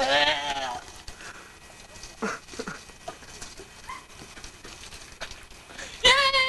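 A man's exaggerated vomiting noises: a loud, wavering, bleat-like retching cry at the start, then a couple of short gagging sounds that drop in pitch a little over two seconds in.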